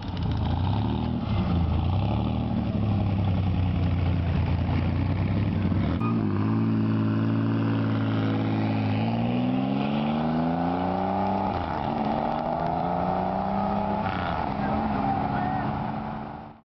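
Chevrolet Corvair's air-cooled flat-six running, first unevenly, then settling to a steady note about six seconds in. From about nine seconds it revs up as the car pulls away, its pitch rising, dropping briefly at a shift, then climbing again.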